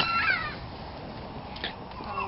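Domestic cat meowing: one drawn-out call falling in pitch at the start, then a faint click about one and a half seconds in.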